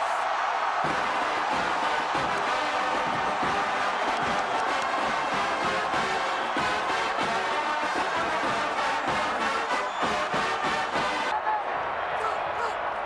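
Brass band music playing over a cheering stadium crowd, with a steady beat; it breaks off abruptly near the end.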